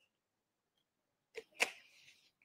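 Near silence, then about one and a half seconds in two quick clicks followed by a brief breathy hiss: a man finishing a drink from a cup.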